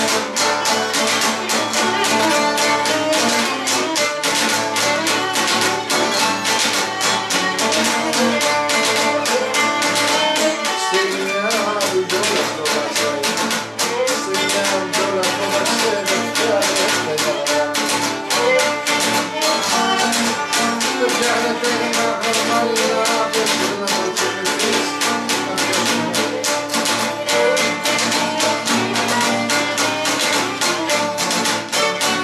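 Cretan lyra playing a fast melody over a laouto strummed in a steady, driving rhythm.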